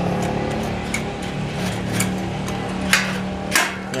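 Metal knocks and clicks as a steel roller tube on bearings is seated into a stainless-steel frame, with two louder sharp knocks in the second half. A steady low hum runs underneath.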